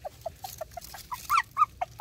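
Puppies squeaking and whimpering: a quick run of short high squeaks, then a few louder rising-and-falling yelps in the second half.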